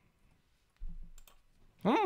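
A few faint clicks of a computer mouse, with a short soft low sound about a second in; a man starts speaking near the end.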